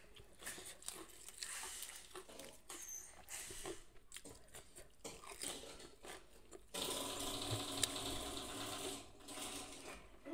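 Close-up mouth sounds of chewing food, with small wet clicks and crunches. A louder, steady hum-like sound sits over it for about two seconds starting about seven seconds in.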